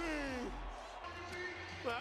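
Arena public-address announcer drawing out a player's name in one long, falling call over intro music and crowd noise during player introductions; a TV commentator's voice starts at the very end.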